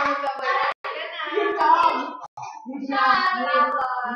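Several people's voices in a small room, talking and singing in snatches, with a few light taps.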